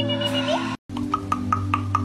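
A held tone bends upward and breaks off. After a brief gap comes a quick, even run of fingertip taps on a lying woman's forehead, about five a second, each with a small hollow pop, over a steady low drone.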